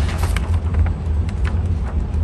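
Steady low rumble, with a few faint clicks and rustles of paper targets being handled.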